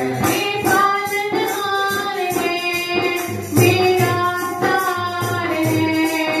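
A woman singing a devotional bhajan in long, held phrases, accompanied by a dholak drum keeping a steady beat.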